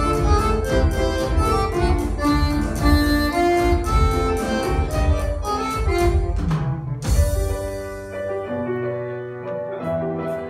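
Live instrumental band with accordion, guitars and keyboard playing an upbeat tune over a steady beat. About seven seconds in, a low note slides down and a crash hits. The beat then drops out, leaving quieter held chords.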